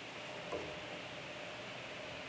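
Steady hiss of an air conditioner running in the room.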